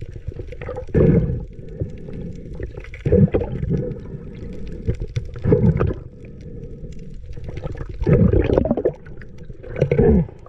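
Muffled underwater water noise heard through a camera housing, swelling into a rushing, gurgling surge every two to three seconds as the diver swims over the reef.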